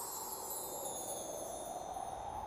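Soft background music score: a shimmering wind-chime wash over a gently held tone.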